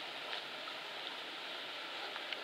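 Steady hiss of background noise with a few faint ticks.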